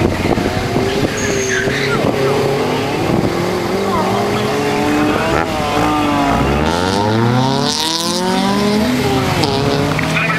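An autocross car's engine revving hard on the course, its pitch rising and falling as the driver accelerates and lifts, climbing strongly in the second half. Brief tyre squeal is heard as it corners.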